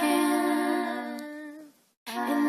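Layered a cappella female voices, one singer multitracked, holding a sustained chord that fades away over about a second and a half and drops to silence shortly before the end.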